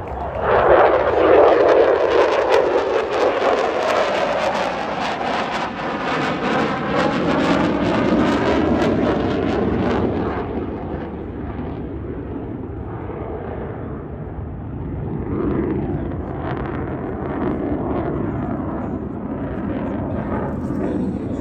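F-16 fighter jet's engine noise as it passes close by, rising sharply about half a second in, with its pitch falling as it moves away. After about ten seconds it settles into a lower, steadier distant rumble.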